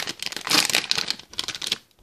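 Plastic foil blind bag crinkling and crackling in the hands as it is opened, a dense run of crackles loudest about half a second in.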